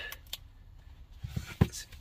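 A few light clicks and knocks of handling noise, with one sharper knock about one and a half seconds in.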